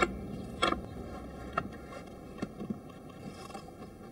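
A few light wooden knocks and clacks from wooden lock parts being handled and fitted, the loudest about two-thirds of a second in, then fainter ones.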